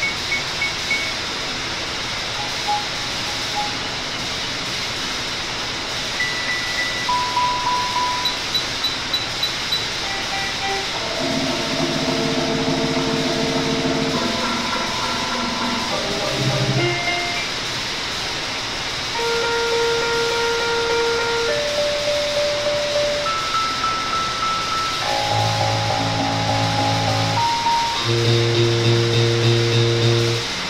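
Layered experimental electronic music: a constant hiss-like noise bed under held synthesizer tones and chords that enter and drop out at shifting pitches. Some tones pulse a few times a second, around a third of the way in and again near the end.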